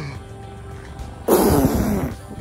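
A person blowing out one hard, loud breath straight at the microphone, giving a rushing gust with a deep rumble that starts suddenly about a second and a half in and lasts under a second: an imitation of a preacher 'blowing away' COVID-19.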